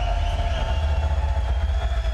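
A deep, steady electronic bass drone with a held higher tone above it, played loud over an arena sound system as an intro sting.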